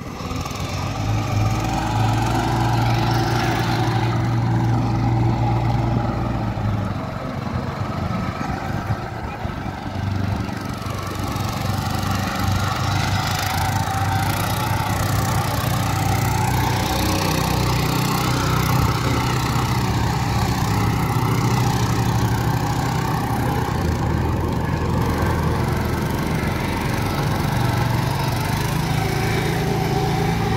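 Small engine of a mini two-wheel tractor pulling a loaded trolley, running steadily throughout with a low engine note and a higher hum above it.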